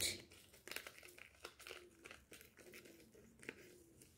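Thin plastic packet crinkling and rustling faintly in the hands as it is handled and opened, in small irregular crackles.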